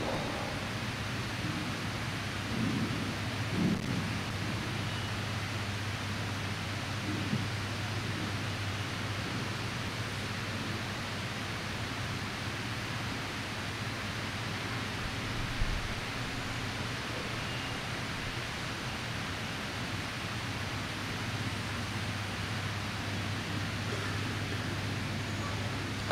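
Steady hiss with a constant low hum, broken only by a few faint brief murmurs in the first several seconds: background room and sound-system noise during a pause in speech.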